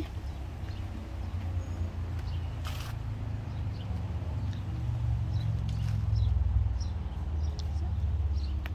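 Uneven low rumble of outdoor wind on the microphone, growing stronger after about five seconds, with a short hiss nearly three seconds in and a few faint high chirps.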